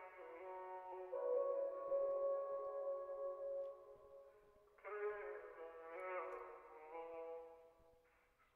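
Auto-tuned vocal tracks playing solo: nonsense syllables sung in stacked harmonies through a band-pass EQ and reverb. A first phrase holds one long note, and a second phrase starts about five seconds in and fades out just before the end.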